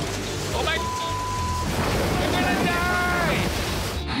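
Storm wind and rain rushing steadily, with a man's voice shouting in short bursts near the start and again in the second half, and a short steady beep about a second in.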